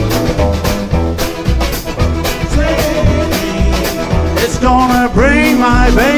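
A live rock and roll band playing between vocal lines: a steady drum beat over upright bass, with electric guitar and accordion.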